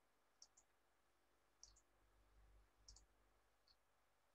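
Near silence with faint computer mouse clicks: three quick double clicks about a second and a quarter apart, then a single click near the end, with a faint low rumble under the middle pair.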